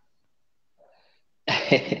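Near silence, then about one and a half seconds in a sudden short burst of breathy vocal noise from a person, just before speech starts.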